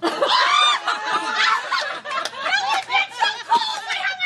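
People laughing hard, with high-pitched, overlapping laughter and snatches of speech, starting suddenly at once.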